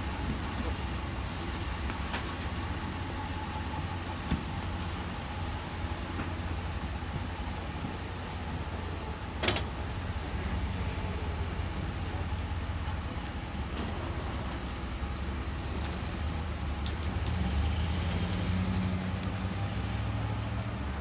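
Pickup truck engines running at idle with a steady low rumble, a sharp click about nine and a half seconds in, and the engine note rising near the end as a truck pulls away.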